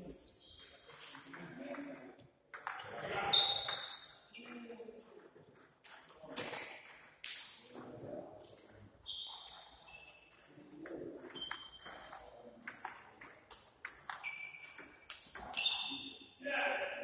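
Table tennis ball being hit back and forth: sharp clicks of the ball off the paddles and bouncing on the table, coming irregularly through rallies.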